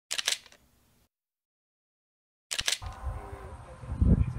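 A quick cluster of sharp clicks, then dead silence; about two and a half seconds in, more clicks, followed by outdoor background noise with faint wavering tones.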